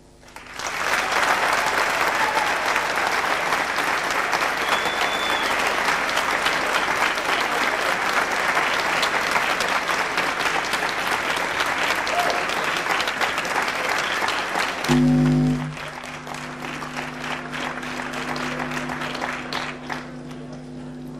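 Audience applauding. About fifteen seconds in there is a thud, then a steady low tone holds under thinning applause.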